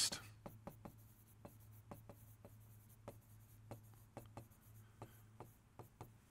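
Faint, irregular taps and short strokes of a stylus on a touchscreen display as a word is written out in block letters, over a low steady hum.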